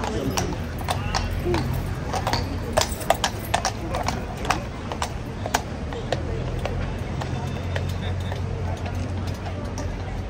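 Shod hooves of a Household Cavalry horse clip-clopping on stone paving as it walks away, the strikes loudest in the middle and dying out after about six seconds.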